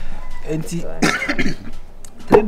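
Voices talking, with a short throaty burst about a second in.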